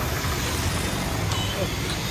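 Motorcycle engine running steadily, with street traffic noise around it.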